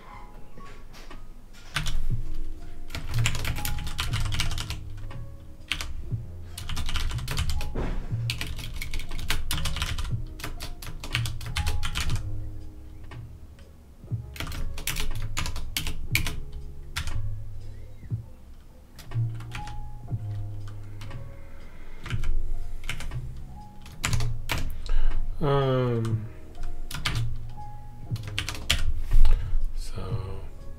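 Computer keyboard typing in bursts of fast key clicks, with pauses between runs, over quiet background music.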